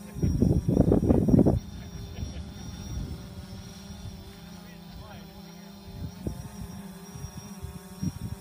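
Wind buffets the microphone with loud rumbles for about the first second and a half. After that a distant engine drones steadily and evenly.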